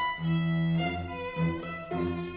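Chamber music for bassoon and string quartet: bowed strings play held notes over a low note that repeats in a long-short rhythm.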